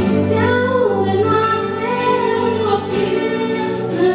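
A woman singing a colindă, a Romanian Christmas carol, into a microphone over instrumental accompaniment; her voice comes in just after the start, over the instrumental opening.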